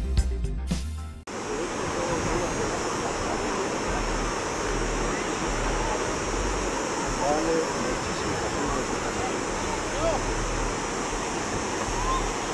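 Intro music cuts off suddenly about a second in, giving way to the steady rush of a river flowing over rapids.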